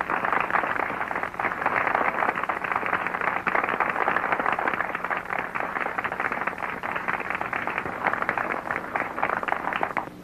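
Audience applauding: dense, steady clapping, heard through a dull, narrow-sounding early sound-film recording.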